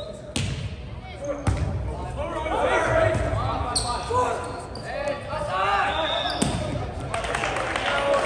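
A volleyball struck by hands four times in a rally, each contact a sharp slap that rings briefly in the gym, with players and spectators calling out and shouting between the hits.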